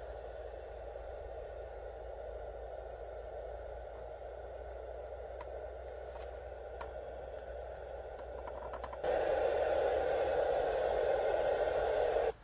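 Steady receiver hiss from the Yaesu FT-817 transceiver's speaker, with a few light clicks as the Yagi is turned. About nine seconds in, the hiss suddenly jumps louder and harsher, as if the rig has just been switched over to FM.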